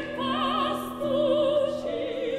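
Two classically trained female voices, soprano and mezzo-soprano, singing in operatic style with wide vibrato over grand piano accompaniment. A new, higher sung phrase enters about a second in.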